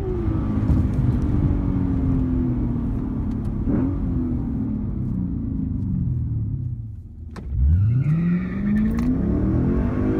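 Lexus IS F's 5.0-litre V8 with an aftermarket cat-back exhaust, heard from inside the cabin, its pitch falling slowly as the car winds down after a run. About seven seconds in, after a brief dip and a click, the engine revs up again with a sharply rising pitch.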